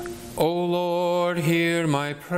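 A man's voice chanting a liturgical phrase on one sustained pitch, starting about half a second in and breaking off near the end, with a brief dip partway through.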